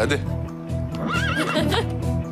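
A horse whinnying once about a second in, a wavering high call a little under a second long, over background music with a steady beat.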